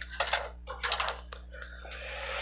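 Clear plastic action-figure display stands being picked up off a wooden shelf: a string of light plastic clicks and taps, about half a dozen over two seconds.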